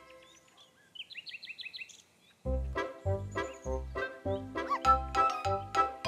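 A quick run of short, high, rising chirps lasting about a second, a cartoon sound effect. Then, about halfway through, a bouncy cartoon music cue starts with a steady bass beat and short plucked notes.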